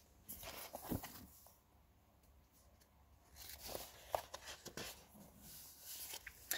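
Paperback book handled and its page turned: faint paper rustles with a soft knock about a second in, then a run of small rustles and clicks.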